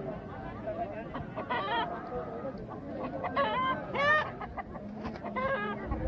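Roosters calling: several short pitched calls, the loudest about four seconds in, over people talking.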